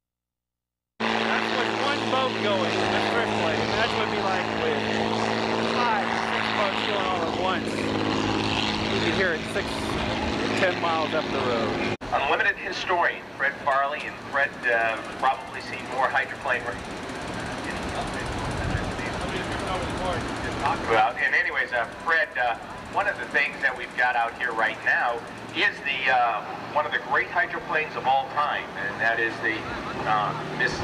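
Unlimited hydroplane's Rolls-Royce aircraft engine running at speed, a steady drone, with voices over it. After a cut about twelve seconds in, the engine is fainter under talk.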